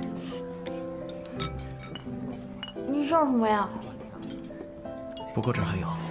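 Chopsticks clinking against a ceramic bowl and noodles being slurped, over a soft background score of held notes. A short rising-and-falling vocal sound comes about halfway through, and speech starts near the end.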